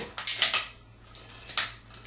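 Plastic parts of a toilet flush valve assembly (the valve body with its flapper and rubber gasket) rattling and clicking as they are handled. There are two brief bursts, one near the start and one near the end.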